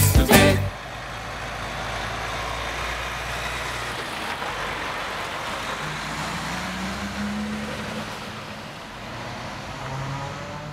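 Song ends less than a second in, giving way to a truck on the road: steady engine and tyre noise. The engine note rises about six seconds in and again near the end.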